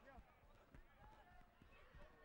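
Near silence: faint, distant voices of players calling on a rugby field, with a few soft low thuds.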